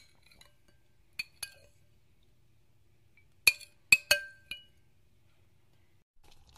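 Tableware clinking: six sharp, briefly ringing clinks, two a little after a second in, then a louder cluster of four between about three and a half and four and a half seconds.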